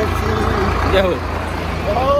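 A loud, steady low rumble with a broad noise over it, and a short vocal sound about a second in.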